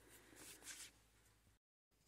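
Near silence: a faint rustle of handling in the first second, then a short stretch of dead digital silence where the video is cut.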